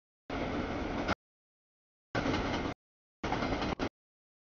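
Freight train cars rolling past at a grade crossing, a rumbling wheel-on-rail noise with no clear tones. It comes through in three short bursts, each under a second, with complete dropouts in between.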